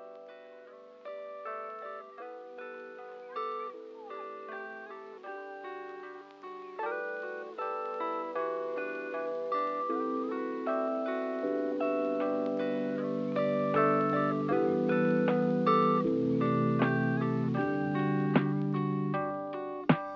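Background music: a melody of plucked-string notes that grows steadily louder, with lower notes joining about halfway through.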